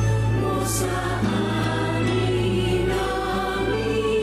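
Choir singing a slow sacred hymn over a sustained low accompaniment.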